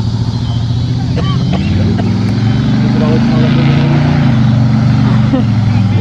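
A 1971 Plymouth Valiant's built 360 V8, with headers and a roller cam, running loud as the car drives away. Its pitch climbs a little early on and then holds steady. Brief shouts break in about a second in.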